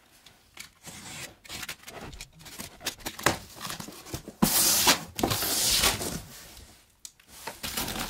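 A cardboard box being opened and rummaged in: the flap lifted and cardboard scraping, then the plastic wrapping of a vacuum-packed rolled mattress rustling under the hands. The longest, loudest rustle comes about halfway through.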